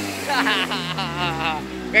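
Vintage Vespa scooter's two-stroke engine idling with a steady low hum, under faint voices.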